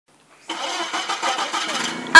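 Forklift engine running, a regular pulsing with a thin steady high whine over it, coming in about half a second in.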